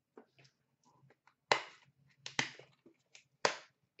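A few sharp clicks and taps, the loudest three about a second apart, with lighter ticks between them, from objects being handled by hand.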